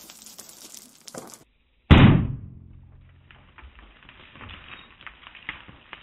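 A single 9mm pistol shot about two seconds in, fired at close range into a twine-wrapped concrete armour panel, with a tail that dies away over about a second. It is the second round into the panel, which the panel stops.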